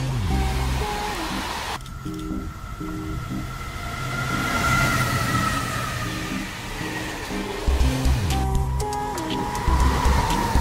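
Background music with a stepping bass line and held chords.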